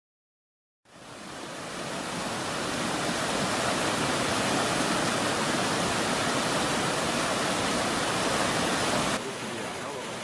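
Silence, then about a second in a rocky creek cascading over boulders fades up into a steady rush of water. Near the end it cuts to a softer sound of falling water.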